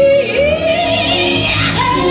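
Live gospel music: a woman sings lead through a microphone, her voice gliding up and down between notes, backed by the band.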